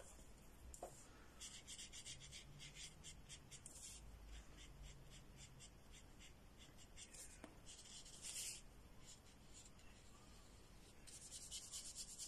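Faint paintbrush strokes on paper: quick back-and-forth rubbing in three runs with pauses between.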